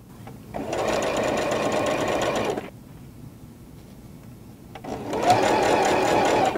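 Electric sewing machine stitching pieced quilt fabric in two runs of about two seconds each, with a short pause between them.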